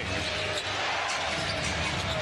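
A basketball being dribbled on a hardwood court under a steady murmur of arena crowd noise.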